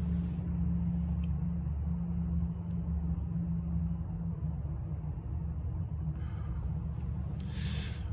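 A steady low mechanical hum, with soft breaths of a smoker drawing on and exhaling a cigar near the end.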